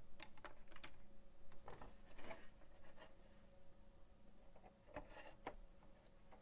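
Scattered light clicks and taps, with a brief scraping rustle about two seconds in: cables being handled and the plastic back cover of a Huion Kamvas 22 Plus pen display being fitted back on.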